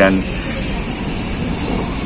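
Steady background rumble of a city street, even and without distinct events, after a man's voice trails off just at the start.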